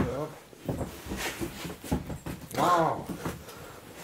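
Mostly speech: a short "ja" at the start and an exclaimed "wow" about two and a half seconds in, with a few faint clicks in the gap between.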